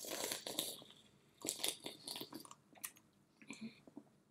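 Cola being gulped and slurped straight from aluminium cans in a drinking race, in irregular bursts of swallowing and sucking.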